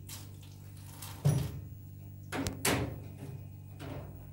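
Kitchenware being handled at a counter: a few sharp knocks and clatters, the loudest about a second in and a cluster near the three-second mark, over a steady low hum.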